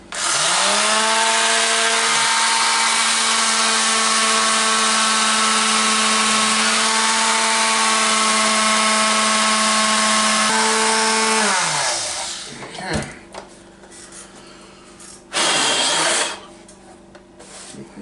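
Electric detail sander switched on and spinning up, running steadily for about eleven seconds with small shifts in pitch as it is held lightly against an old plastic RC car body, then switched off and winding down. A short burst of noise follows a few seconds later.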